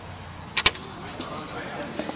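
Metallic clicks from a door's lock hardware: two sharp clicks close together about half a second in, and a lighter one just after a second.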